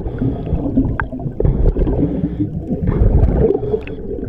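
Underwater rumble and gurgling of water and rising air bubbles against the camera housing, dense and low with an irregular warble.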